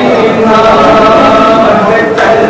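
Male voices chanting a noha, the Shia lament recited in Muharram, in long held notes.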